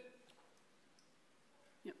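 Near silence: quiet room tone with a few faint clicks, and a short spoken word just at the end.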